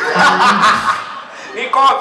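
People laughing and chuckling in a loud burst that fades within about a second, followed by a couple of quickly spoken words near the end.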